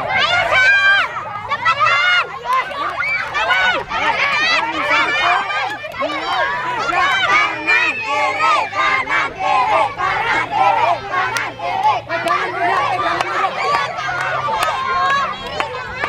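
A group of children shouting and cheering excitedly, many high voices overlapping all through.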